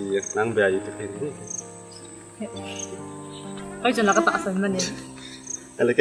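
A cricket chirping with short, high chirps about once a second, over background music of long held notes that come in about halfway through. Brief bursts of a person's voice rise above it near the start and again later.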